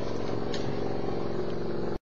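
A steady, engine-like mechanical drone holding one pitch throughout, with a faint click about half a second in.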